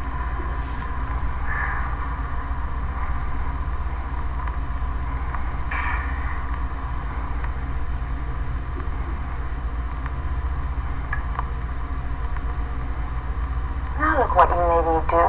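A steady low droning hum, even in level throughout, with a faint buzzing overtone above it and a couple of faint clicks near the middle.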